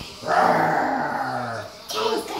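A person imitating a big cat's roar: one long, growly, voiced roar, about a second and a half, falling in pitch.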